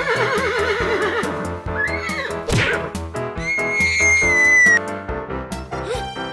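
A horse whinny sound effect, a quavering neigh in the first second, over upbeat background music. A loud, high, held whistling tone follows for about a second and a half, dipping at its end.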